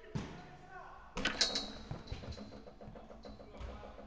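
Players shouting inside a large indoor five-a-side football hall, the loudest call about a second in, with a few dull thuds of a football being kicked.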